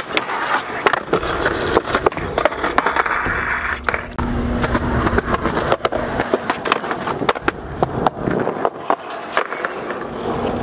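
Skateboard wheels rolling on concrete, with many sharp clacks of the board popping and landing and the trucks grinding along a concrete bench ledge.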